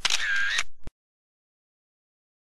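Camera shutter sound effect with a short whirring wind, lasting just under a second and cutting off sharply.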